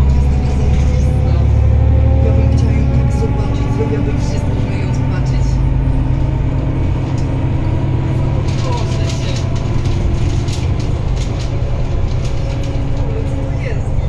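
Interior sound of a Solaris Urbino 12 III city bus under way: its Cummins ISB6.7 six-cylinder diesel and ZF EcoLife automatic gearbox running with a steady low rumble over road noise, a little louder for the first few seconds and then easing.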